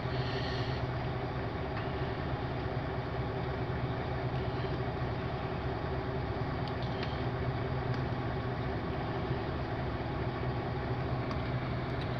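Mercedes-Benz Actros truck's diesel engine idling steadily in neutral, a constant low hum heard inside the cab.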